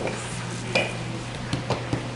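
A few light knocks and taps from rolling out and handling dough with a wooden rolling pin on a floured table, over a steady low hum.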